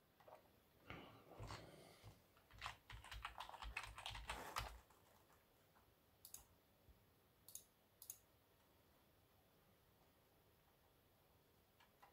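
Faint typing on a computer keyboard for about four seconds, followed by three separate sharp clicks a second or so apart.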